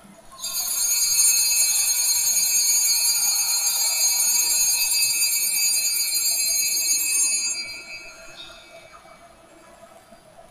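Altar bells (sanctus bells) shaken in one continuous, shimmering high ring for about seven seconds, then dying away, marking the elevation of the chalice after the consecration at Mass.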